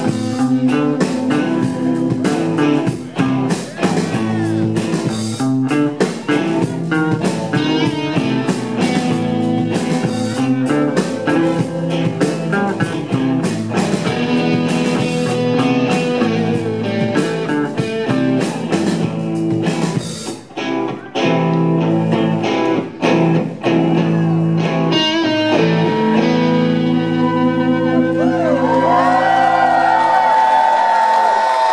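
Live rock band playing the closing instrumental section of a song: electric guitars, bass guitar and drums. About two-thirds of the way through the drums stop and the guitars and bass keep ringing on sustained chords, with sliding guitar notes near the end.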